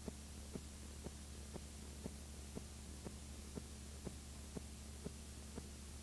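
Faint steady electrical hum and hiss, with a short click repeating evenly about twice a second. This is the playback noise of an unrecorded stretch of videotape.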